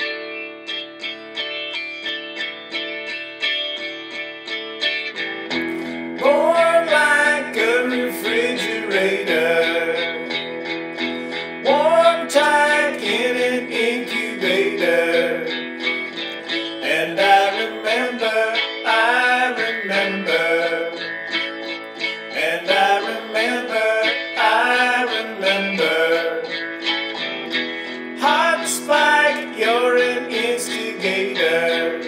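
Instrumental break of a rock song: strummed guitar chords over held notes. Bass and a lead line of bending, sliding notes come in about six seconds in.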